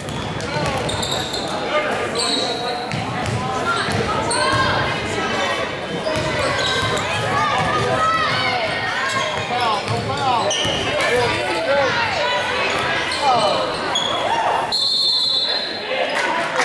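Live basketball game in a gymnasium: the ball bouncing on the hardwood floor, shoes squeaking, and players and spectators calling out, echoing in the large hall. A referee's whistle sounds for about a second shortly before the end.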